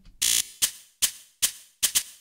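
Hi-hat sample played by a Kilohearts Phase Plant sampler whose start and length are randomly modulated, run through distortion, heavy compression and reverb. It gives glitchy, really random, bright output: a short buzzy burst just after the start, then sharp hits at uneven intervals, each with a quickly decaying tail.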